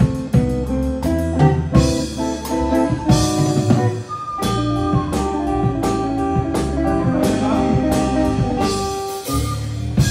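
Live band playing an instrumental passage: an amplified electric guitar plays a melody of single notes over a drum kit keeping a steady beat, with low sustained notes underneath.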